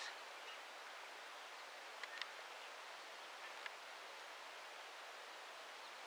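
Quiet, steady outdoor background hiss with a few faint short ticks, about two seconds in and again a little later.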